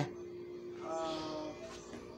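A faint, hesitant "uh" from a voice about a second in, over a steady low hum that fades out halfway through.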